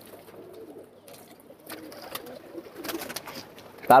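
A flock of domestic pigeons cooing faintly, with a few brief wing flutters from birds landing in the second half.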